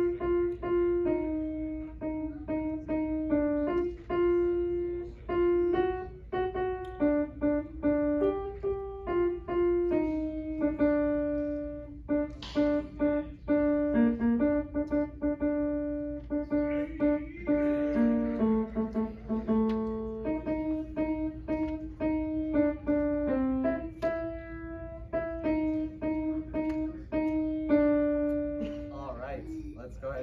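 Piano playing a hymn's alto part through once, a single line of held notes at a moderate, steady pace, now and then two notes together.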